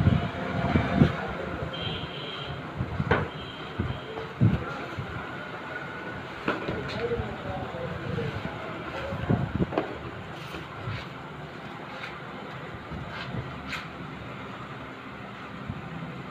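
A cardboard product box being handled and opened on a table: knocks and scrapes of the box, then rustling of the paper manual and plastic-wrapped foam packing. A steady background rumble runs underneath.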